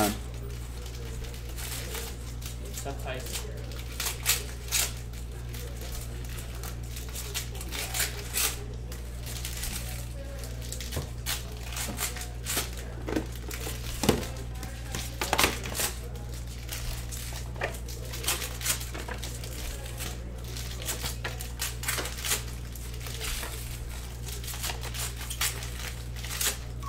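Trading cards and their packs being handled: irregular small clicks, snaps and crinkles of cardstock and wrappers, over a steady low hum.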